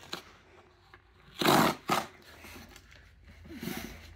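Cardboard packaging scraping as the lid is slid off a large shipping box: one loud rasp about one and a half seconds in, then a shorter one just after.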